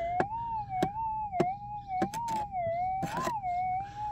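Metal detector's threshold tone, a steady hum that wavers gently up and down in pitch and rises briefly about three seconds in, with a few sharp clicks scattered through it.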